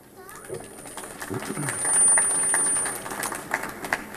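A small crowd clapping after a speech. The applause builds about a second in and thins out near the end, with a faint steady high-pitched tone running through most of it.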